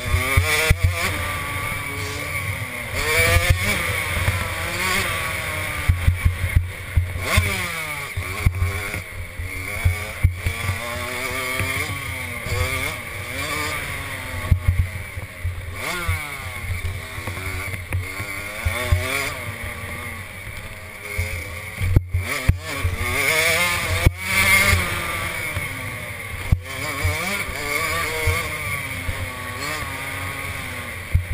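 65cc two-stroke motocross bike engine revving hard, its pitch rising and falling over and over as the rider works the throttle and gears, with wind rushing over the microphone. A few sharp knocks come about two-thirds of the way through.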